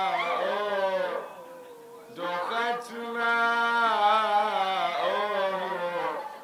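A man singing a Swahili qaswida solo in long, wavering held notes, with no instruments audible. He breaks off about a second in and comes back in about a second later.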